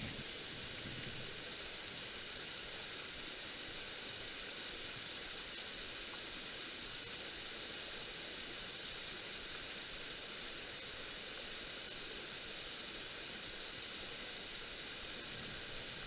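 Steady rush of a small waterfall pouring into a rocky pool, an even hiss of falling water with no change throughout.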